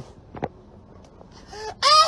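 Mostly quiet, with one soft click about half a second in. Near the end, loud high-pitched laughter breaks in, in quick wavering pulses.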